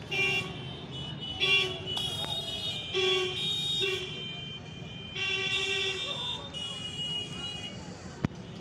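Vehicle horns honking in road traffic: about five steady blasts of differing pitch, mostly short, one lasting about two seconds with another horn layered over it, over a constant low traffic rumble.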